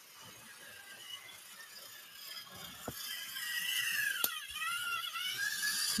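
Battery-powered toy train's motor and gears whining with a high squeal that wavers up and down in pitch and grows louder from about three seconds in, with a sharp click about four seconds in.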